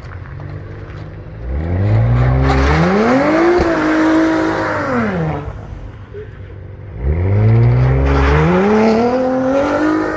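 Audi B9 RS4's twin-turbo 2.9-litre V6 accelerating hard twice. The first run comes during tyre and brake warm-up: the engine note climbs about a second and a half in, holds, then falls away just past halfway. The second comes about seven seconds in, as the car launches off the start line and pulls away, its note climbing again.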